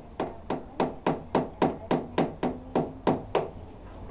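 About a dozen quick blows of a toy tool on the plastic body of a child's ride-on toy Hummer, at a steady three or so a second, stopping a little over three seconds in.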